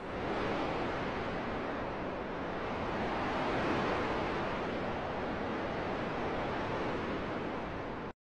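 A steady, even rushing noise with no pitch or rhythm, holding at one level and cutting off suddenly at the very end.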